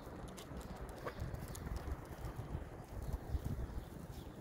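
Footsteps on a concrete footpath while walking two huskies on leads, an irregular run of soft low thuds with a few faint light clicks.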